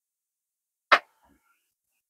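Handling noise as the camera is moved in closer: one short, sharp knock about a second in, otherwise near silence.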